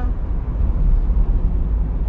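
Toyota MR-S roadster driving with the top down, heard from inside the open cabin: a steady low rumble of wind, tyres and engine.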